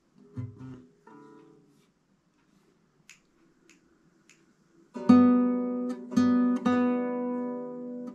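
Nylon-string classical guitar: after a few soft finger sounds on the strings and three faint clicks about 0.6 s apart, the open B string is plucked repeatedly from about five seconds in, the same note ringing out in a slow waltz rhythm.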